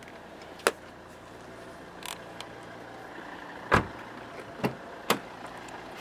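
A few sharp clicks and knocks from handling a car's doors and interior fittings, with one heavier thump a little past halfway, over a steady low hum.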